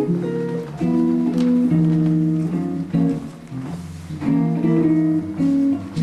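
Solo archtop guitar playing a run of chords, each held briefly before the next, with short breaks between phrases.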